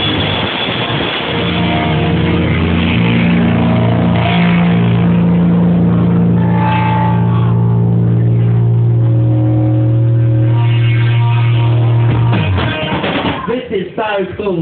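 Live rock band with electric guitar, bass and drums, closing a song on one long chord held for about ten seconds. The chord stops suddenly near the end, and voices come up in its place.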